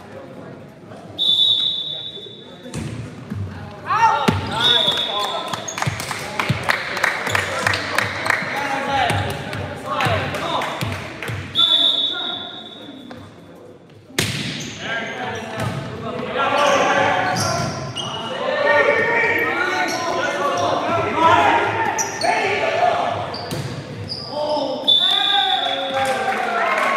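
Indoor volleyball play in a gym: four short referee whistle blasts, the ball struck hard with sharp slaps (loudest at the serve about 14 s in), and players and spectators shouting and calling throughout.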